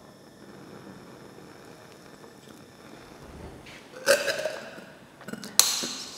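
Magnesium flaring up as it burns in a gas jar of pure oxygen: a sudden hissing burst about four seconds in that fades over a second, then a second burst just before the end.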